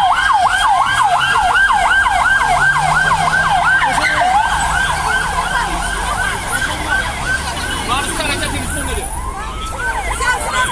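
Police van siren on a fast yelp, its wail sweeping up and down about three times a second, fading near the end and starting again.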